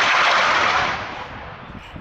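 TOW anti-tank missile launch: a loud rushing hiss of the launch blast that fades away over about a second and a half.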